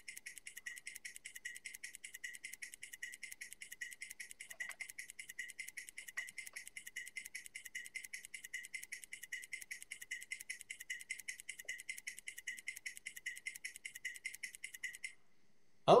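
Computer-generated ticking from a robot simulator while the simulated robot runs: a rapid, even train of sharp clicks, about a dozen a second. It cuts off suddenly near the end as the simulated run stops.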